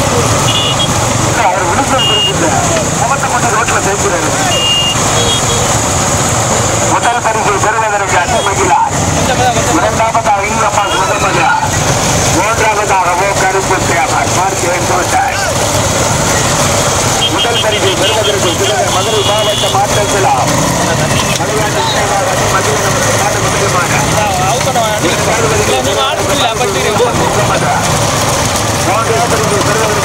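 A pack of motorcycle engines running steadily close behind racing bullock carts, with people's voices heard over them throughout.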